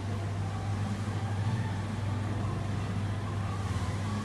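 A steady low hum, with faint wavering tones and a noisy background haze.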